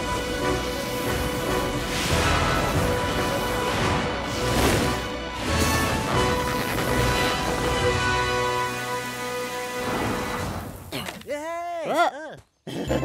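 Cartoon background music with sound effects, including noisy crash-like bursts around the middle. Near the end a pitched sound wavers rapidly up and down.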